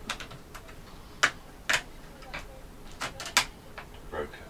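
Plastic display bezel of a Lenovo ThinkPad X230 laptop being pried off by hand: a series of sharp clicks as its retaining clips snap free. About six clicks in all, the loudest a little after one second in and again a little after three.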